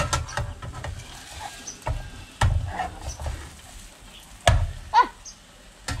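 Metal spatula knocking and scraping against a frying pan of frying eggs, a handful of separate sharp knocks with a brief falling squeak near the end.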